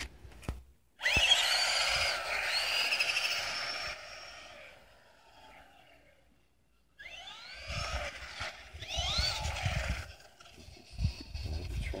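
A radio-controlled car's motor whining and rising in pitch as it speeds up. The first run starts suddenly about a second in and fades away as the car drives off. From about seven seconds in it comes back with several short revs.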